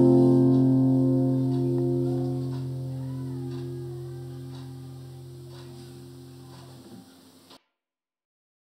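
Final strummed chord of an acoustic guitar ringing out and slowly fading away, ending the song, then cut off into silence about seven and a half seconds in.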